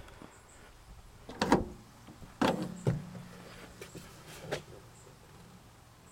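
Rear cargo door of a 2010 Ford Transit Connect swung wide open to its 255-degree stop: a few sharp clunks and knocks, the loudest about a second and a half and two and a half seconds in, as the door comes round and is caught by its magnet catch.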